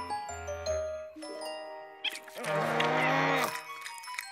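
Cartoon underscore: a quick run of short chime-like notes stepping in pitch. About two and a half seconds in comes a drawn-out, wavering pitched sound about a second long.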